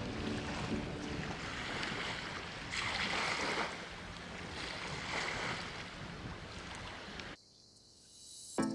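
Coastal ambience of wind and sea water washing against the shore, swelling twice, about three and five seconds in, then cutting off shortly before the end.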